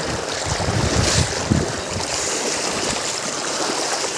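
Penna River floodwater flowing through a flooded village street: a steady rushing wash, with low rumbling in the first second and a half.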